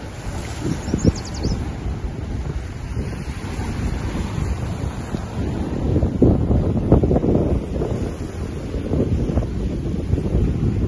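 Wind buffeting the microphone in gusts, strongest about six to seven seconds in, over Lake Ontario waves washing and splashing against shoreline boulders.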